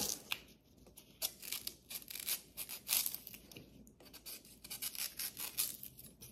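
A knife slicing along a green banana leaf stalk as the fibrous flaps are cut and torn loose: a run of short, crisp cutting and tearing sounds coming in irregular clusters.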